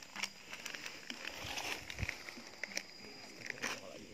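Crinkling and crackling of a small paper bait-additive packet being handled and opened, with many short irregular clicks and a soft thump about two seconds in.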